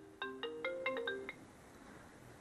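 iPhone ringtone for an incoming call: a quick melody of short marimba-like notes. It stops about a second and a quarter in as the call is accepted.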